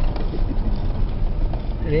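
Vehicle engine and tyre noise heard from inside the cabin while driving on an unpaved dirt track: a steady low rumble.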